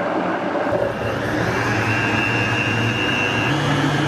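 Countertop blender motor running steadily, blending coffee with coconut cream and MCT oil into a frothy, creamy mix. Its pitch steps up a little about three and a half seconds in.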